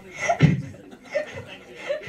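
A woman chuckling into a handheld microphone: a short laugh about half a second in, then a couple of lighter chuckles.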